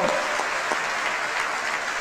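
A large audience applauding steadily, an even wash of many hands clapping at once.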